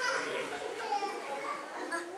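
Indistinct chatter of children's voices, several talking at once.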